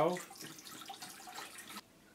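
Water poured from a plastic jug into an empty stainless steel ultrasonic cleaning tank, splashing steadily onto the metal bottom. The pouring sound cuts off suddenly near the end.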